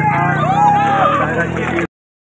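Loud people's voices over a steady low hum, cutting off abruptly near the end.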